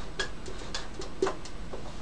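Dry-erase marker writing on a whiteboard: a quick, irregular run of short ticks and scratches from the felt tip, several a second, as characters are written.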